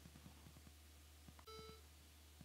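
Near silence with faint ticking. About one and a half seconds in comes a single short, faint computer alert beep: the Mac debugger signalling that the Copland system has stopped on an illegal instruction.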